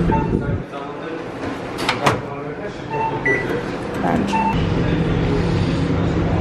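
Microwave oven being loaded and started: a sharp clunk of the door shutting about two seconds in, a few short keypad beeps, then a steady low hum from the oven running over the last second and a half.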